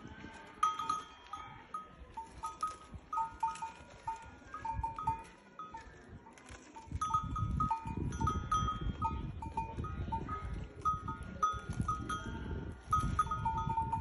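Small livestock bells clinking irregularly, several short ringing notes a second, over a low rumbling noise that grows louder about halfway through.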